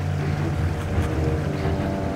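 Sailing yacht's auxiliary engine running steadily as the boat motors slowly through the water: an even, low hum.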